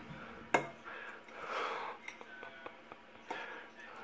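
Metal fork against a ceramic bowl as a forkful of cottage pie is taken: one sharp clink about half a second in, then a few faint small clicks.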